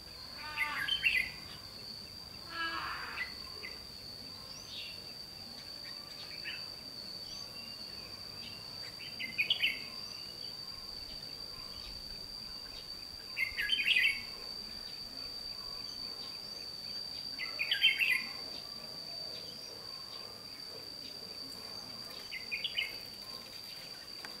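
Red-whiskered bulbul singing short, loud phrases, about one every four seconds, over a steady high-pitched insect drone.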